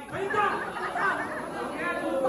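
Several voices talking over one another in a jumble of chatter.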